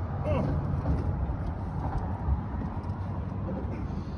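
Steady low engine hum, with a brief faint voice near the start and again near the end.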